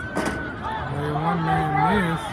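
Spectators and sideline players calling out, with one voice held in a long shout through the second half. A brief sharp knock comes just after the start.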